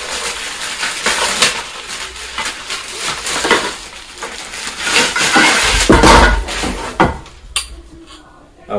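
Plastic packaging crinkling and rustling as a paddle board paddle is unwrapped, with light clinks and knocks from the paddle's shaft sections being handled, and a heavier knock about six seconds in.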